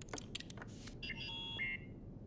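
Sci-fi computer console sound effects as a message playback is started: a run of short electronic clicks, then a cluster of overlapping beeping tones lasting about a second.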